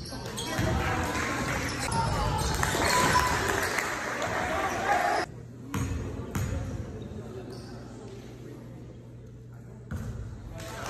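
A basketball bouncing on a gym's hardwood floor among spectators' voices. About five seconds in, the sound cuts off abruptly to a quieter stretch with a few more bounces of the ball at the free-throw line.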